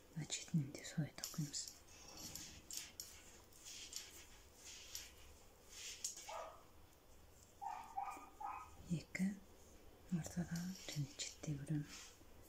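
A quiet, murmured voice in two short stretches, near the start and toward the end, over the soft clicking and scraping of metal knitting needles working yarn. Around the middle come a few short, higher-pitched calls.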